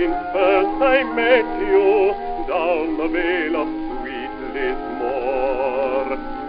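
1922 acoustic-era gramophone recording of a sentimental ballad: a melody with wide vibrato over orchestral accompaniment, changing note every half second or so. The sound is thin, with no high treble, as is typical of records of that era.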